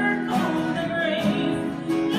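Live worship song played on two acoustic guitars, with singing over the strummed chords.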